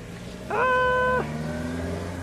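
A single short, steady horn-like beep, most likely a vehicle horn, about half a second in and lasting under a second, over a low steady engine hum.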